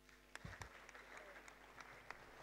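Faint, scattered audience applause, with a steady low mains hum underneath.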